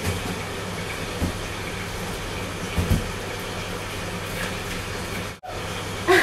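Steady rushing background noise with a low hum underneath and two soft thumps, one about a second in and one near three seconds.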